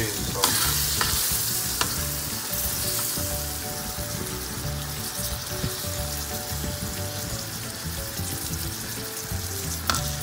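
Fried pork chops sizzling in a pan of bubbling broth-and-flour gravy as they are laid back in, with a few light knocks in the first two seconds.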